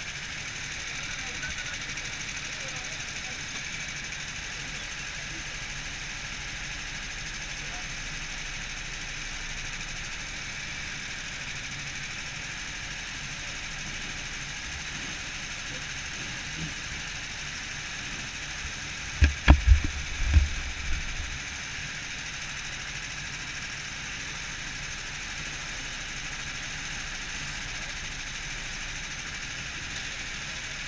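Go-kart engines idling in a steady hum while the karts sit queued in the pit lane. A short cluster of heavy, deep thumps comes about two-thirds of the way through.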